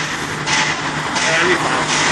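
Steady street traffic noise with a low hum, picked up by a phone's microphone. A voice is faintly heard about a second in.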